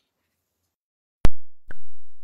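Two sharp knocks right at the microphone, about half a second apart. The first is very loud and the second trails off in a low rumble.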